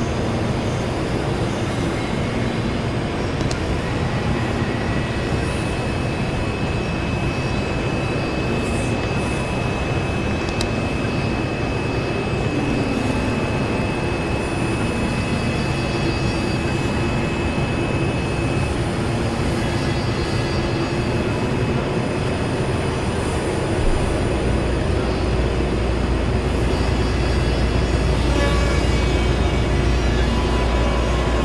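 Experimental synthesizer noise drone: a thick, steady wash of noise with a few held tones, including a thin high tone from about 6 to 19 seconds in. A deep bass drone joins after about 24 seconds.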